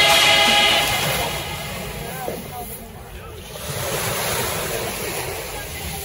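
Small sea waves washing in and out over a pebbly shoreline at the water's edge, a steady wash that quietens about halfway and swells again. Dance music fades out in the first second.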